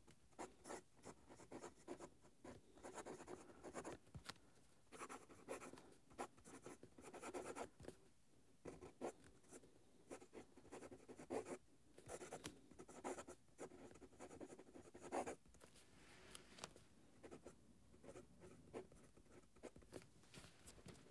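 Steel medium italic nib of a Conid Bulkfiller Regular fountain pen writing on notebook paper: faint scratching in runs of short strokes, with brief pauses between words.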